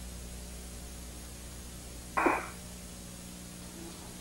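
Steady hum and hiss of an open space-to-ground radio channel, with one brief burst of noise over the link about two seconds in.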